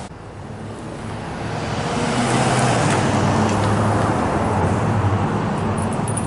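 Street traffic: car tyre and engine noise that swells over the first two seconds, with a steady low engine hum, then holds steady.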